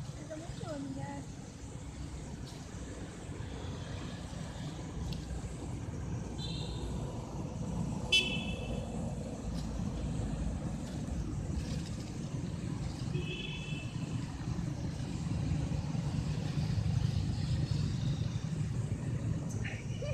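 Steady traffic rumble from a road, with a vehicle horn giving three short toots, about six, eight and thirteen seconds in.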